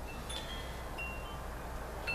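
A few short, high ringing tones, scattered and soft, over a low steady hum.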